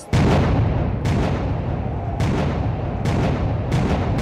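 Loud street-protest din that starts suddenly, with sharp bangs every half second to a second.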